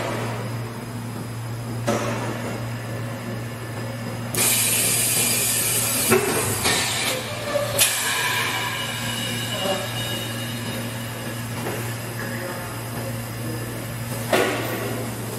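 Semi-automatic PET blow-moulding machine for 5-gallon bottles running a cycle over a steady low hum. A loud hiss of compressed air starts suddenly about four seconds in and fades over the next few seconds, with several sharp pneumatic clunks around it.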